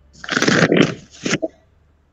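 A burst of rustling, crackling noise lasting about a second.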